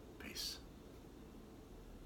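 A man's single short whispered sound about half a second in, a brief hiss with no voiced pitch, then faint room tone.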